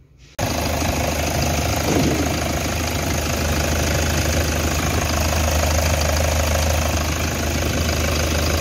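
Toyota Hilux 1KD-FTV four-cylinder turbo-diesel idling steadily, running fine with its new turbocharger and boost control solenoid fitted and the P0045 code cleared. The sound cuts in abruptly just after the start.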